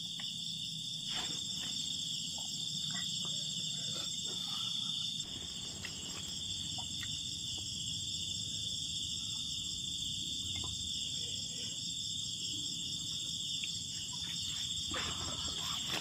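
Night insect chorus: a steady high-pitched buzz with a faster pulsing trill above it, running on unbroken. Faint scattered clicks sound now and then beneath it.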